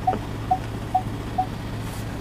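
Four short, evenly spaced electronic beeps from a 2015 Ford Edge's park aid system, about two a second, over a steady low hum in the cabin.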